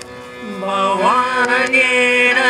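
Bowed violin holding a sustained note, joined about half a second in by a man's singing voice that slides upward and holds a long, drawn-out note over it, in a chant-like style.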